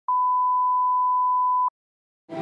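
Line-up test tone played with colour test bars: a single steady pure beep that starts with a click and cuts off suddenly after about a second and a half.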